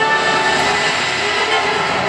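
A loud, dense rushing hiss with a few held tones in it, a sound effect in the castle projection show's soundtrack that briefly takes the place of the orchestral music.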